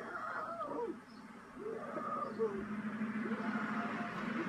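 A person's wordless cries, short and rising and falling in pitch. A steady low hum comes in about a second and a half in.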